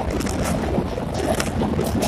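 Passenger train running across a steel truss rail bridge, heard from an open window: a steady rumble from the wheels and track, broken by frequent short clanks and rattles, with wind on the microphone.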